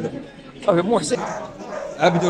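A dog barking and yelping, loudest a little past the middle, with people's voices around it.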